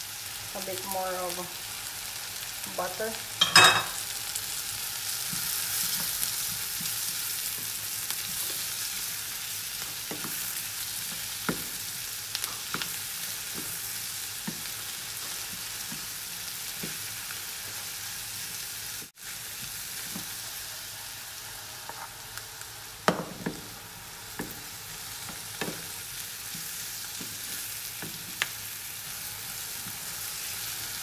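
Sliced mushrooms and onions sizzling in lard and butter in a frying pan, stirred with a wooden spatula that taps and scrapes against the pan. A louder knock comes about three and a half seconds in and another a little past two-thirds of the way through.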